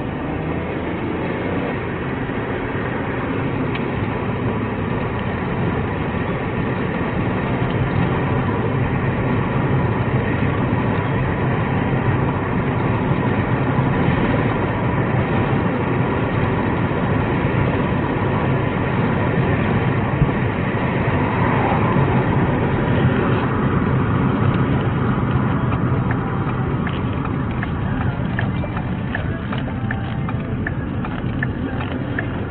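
Road and engine noise of a moving patrol car heard from inside the cabin: a steady low rumble that grows a little louder after several seconds as the car picks up speed.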